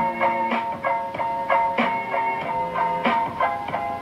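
A short tune with a plucked, guitar-like sound, played over a CB radio's speaker by its add-on sound-effects box, with notes changing every fraction of a second. It is the box's roulette mode, which plays a different sound each time the microphone is keyed.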